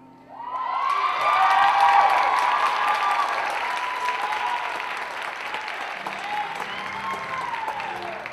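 Audience applause with high-pitched cheering, breaking out suddenly just after the start as the dance music ends. It is loudest about two seconds in, then slowly eases off.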